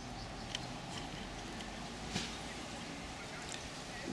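Steady low outdoor background noise, with two faint clicks as multimeter test leads are handled and connected to the solar panel's cables.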